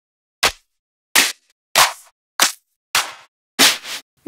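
Clap and snare one-shot samples from a techno and house sample library, previewed one after another. There are six separate hits about two-thirds of a second apart, each a different sample with a short, bright, noisy tail, and dead silence between them.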